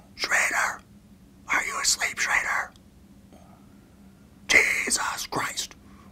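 A man whispering close up in three short phrases with pauses between, over a faint steady hum.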